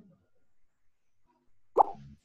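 Near silence, then a single short, sharp pop near the end.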